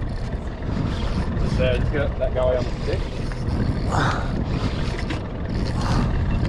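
Wind buffeting the microphone on an open boat, a steady low rumble, with faint voices about two seconds in.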